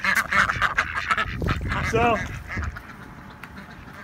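Rouen ducks quacking and chattering as a group in the first half, dying down to quieter sound after about two and a half seconds.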